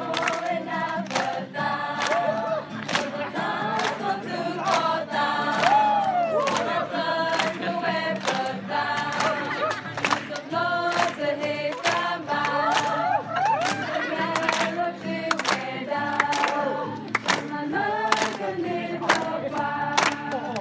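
A large group of young voices singing a team chant-song together, with hand claps in a steady beat, about two a second.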